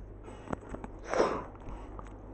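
An iPad's cardboard box and packaging being handled: a sharp click about half a second in, then a short rustling swish about a second in.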